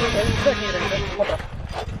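Belgian Malinois vocalizing while gripping a decoy's padded bite sleeve, with a few short pitched sounds in the first half-second.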